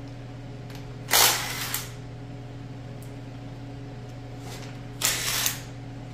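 Ratchet wrench working engine bolts in two short bursts, about a second in and again near the end, over a steady electrical hum; the bolts are very tight.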